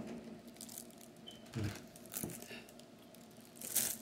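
Items being handled on a table: a soft thump about a second and a half in, a faint tick, and a short crinkle of plastic packaging near the end.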